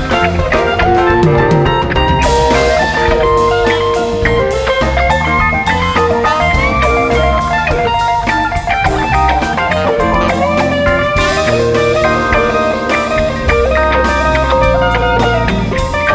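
Live rock band playing an instrumental jam, with electric guitar lines over drum kit and a heavy low end; there is no singing.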